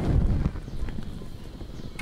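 Wind rumbling on the microphone, loudest in the first half second, with a couple of faint knocks.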